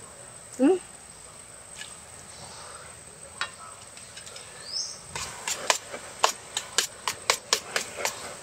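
Eating sounds: a run of quick sharp clicks and smacks, about three a second, beginning about five seconds in as rice and soup are eaten from a plate with a spoon. A short hummed "hmm" comes near the start.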